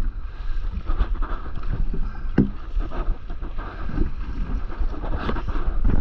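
Wind rumbling on the microphone over water splashing and sloshing around a stand-up paddleboard riding the surf, with sharper splashes about two and a half and five seconds in.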